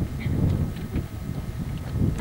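Wind buffeting a camcorder microphone, an uneven low rumble.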